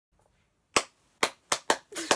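One person clapping her hands four times in quick, uneven succession, starting under a second in.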